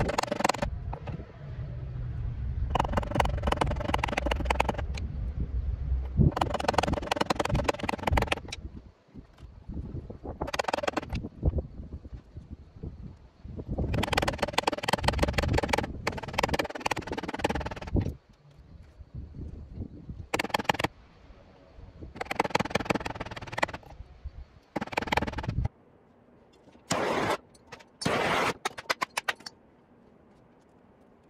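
Small ball-peen hammer striking fabric laid on concrete in bursts of rapid blows, beating the robe's edge to fray it. Wind rumbles on the microphone under the blows until near the end.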